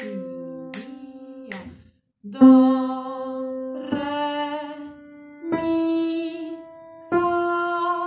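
A woman singing solfège: after a short phrase, four long held notes climbing the scale step by step, do, re, mi, fa.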